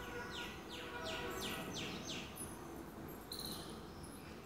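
A bird calling faintly: a quick run of about seven falling notes over the first two seconds or so, then a short high chirp a little after three seconds. Thin high chirps sound faintly in the background.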